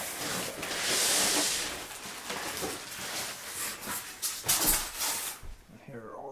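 Rustling, scraping and crinkling of the packaging as a flat-pack furniture box is unpacked: cardboard, paper and plastic wrap handled, with a longer hiss about a second in. The noise dies away shortly before the end.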